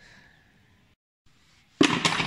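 Faint outdoor background, a brief dropout, then a sudden loud knock with a short echoing tail near the end.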